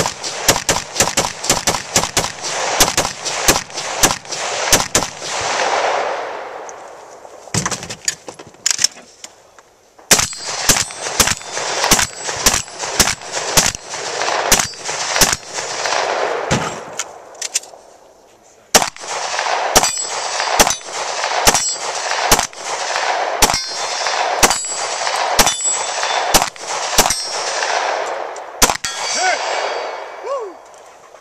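Rapid semi-automatic rifle fire, about three shots a second in long strings, with steel targets clanging and ringing between shots. The firing breaks off briefly about eight seconds in and again around seventeen seconds.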